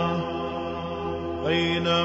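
Islamic devotional chant (nasheed) sung by an unaccompanied voice: a long held note over a steady low hum fades just after the start, and a new sustained note comes in about one and a half seconds in.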